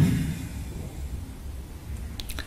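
Steady low hum and faint hiss from a lecture-hall microphone and sound system in a pause between words. A brief noise at the very start fades away over the first half second.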